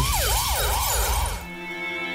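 Siren-like sound effect in a rap track, its pitch sweeping down and back up about four times a second, giving way to a held musical chord about a second and a half in.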